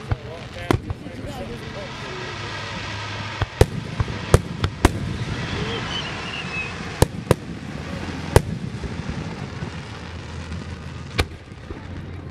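Aerial firework shells bursting during a fireworks finale: about ten sharp bangs, several in quick succession in the middle, over a continuous background of noise.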